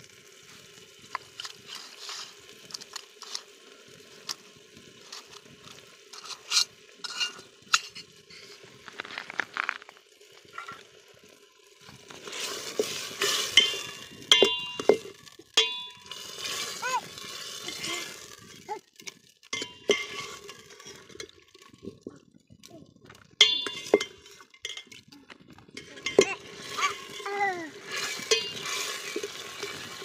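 A metal ladle stirring meat and masala in an aluminium cooking pot, with irregular clinks and scrapes against the pot's sides over the low sizzle of the simmering curry.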